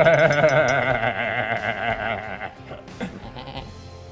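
A man's long, bleating wail with a wavering pitch, lasting about two and a half seconds before fading out.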